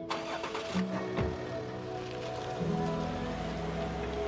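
Background music with a car door shutting about a second in, then the low, steady running of an SUV's engine from about three seconds in.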